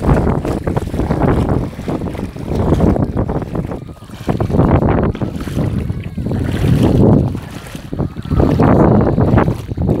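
Wind buffeting a phone microphone in uneven surges, over shallow seawater sloshing and lapping.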